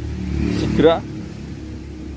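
A vehicle engine rumbles close by and revs up sharply just under a second in, rising in pitch, then drops back to a low background hum.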